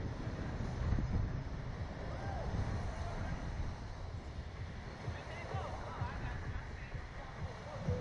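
Wind buffeting the onboard microphone of a SlingShot ride's capsule as it swings on its bungee cords, a steady low rumble. Faint voices are heard in the background, most clearly just past the middle.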